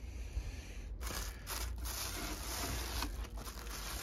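Plastic bag crinkling and rustling as it is handled around a potted plant, a continuous rustle that gets fuller about a second in.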